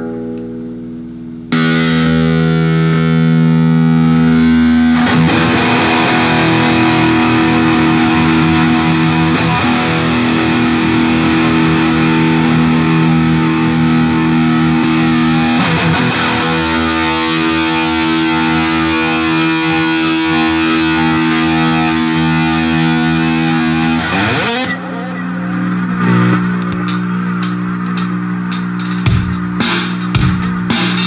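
Distorted electric guitar, a Jackson Randy Rhoads model, played through an effects unit. A single ringing note comes first, then loud chords and notes held at length about a second and a half in. Near the end it changes to quick, short picked notes.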